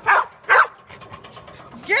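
A small dog barking twice in quick succession, short sharp barks about half a second apart, at a spinning playground merry-go-round.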